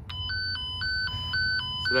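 Fluke Networks Pro 3000 tone-and-probe set in alternating mode: the probe sounds a two-pitch warble, switching between a lower and a higher beep about four times a second as it picks up the toner's signal from the cable.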